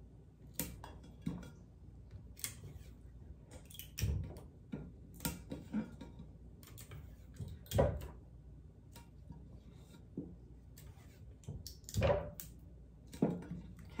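Light handling noise: scattered small clicks, taps and paper rustles as a paper-wrapped stainless steel mason jar is turned and set down on a wooden tabletop and small paper pieces are tucked into place.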